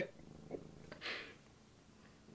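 Domestic cat purring softly while held in someone's arms, with a short breathy puff about a second in.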